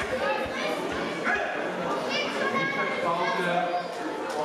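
Many voices chattering and calling across a large, echoing sports hall, with high children's voices rising above the murmur.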